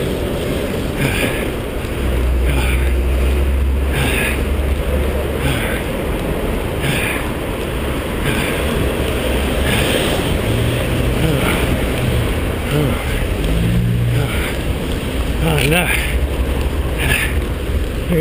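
Wind buffeting a chest-mounted action-camera microphone on a running jogger, with a low rumble of street traffic and a short rhythmic hiss about once a second from the runner's breathing.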